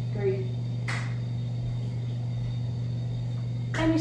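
Steady low hum of room noise, with a brief vocal sound just after the start and a single sharp tap about a second in. Speech begins just before the end.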